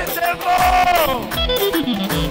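Live band dance music: a deep drum beat about once a second under a melody instrument that holds a long high note, then slides steadily down in pitch in the second half.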